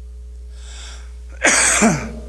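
Low steady hum from the church's sound system, then, about one and a half seconds in, a short, loud breathy vocal exclamation from the preacher that falls in pitch, a gasped "hah" of the kind used in chanted preaching.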